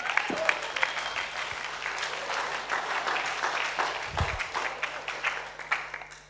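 Audience applauding, dying away toward the end.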